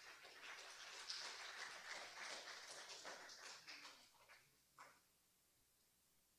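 Faint scattered applause from a small audience, starting up, going for a few seconds and dying away, with one last lone clap near the end.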